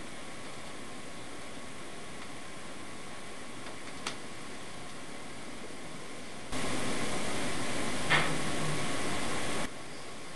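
Steady recorder hiss with a small click near the middle. About six and a half seconds in, a louder, boosted stretch of hiss lasts about three seconds and carries a faint voice-like sound, presented as an EVP saying 'No I can't'. It cuts off suddenly.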